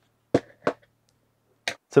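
Two short, sharp knocks of small metal drill parts being handled on a workbench, about a third of a second apart, then a lighter click near the end.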